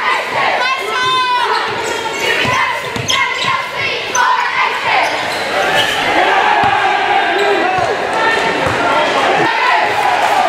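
A basketball bouncing on a hardwood gym floor a handful of times, over steady crowd chatter echoing in a large gym.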